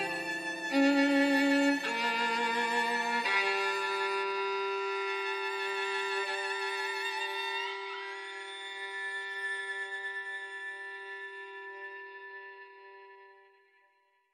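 Bowed strings playing slow, held chords with vibrato. The chord changes a few times in the first seconds, then one chord is held and slowly dies away to silence near the end.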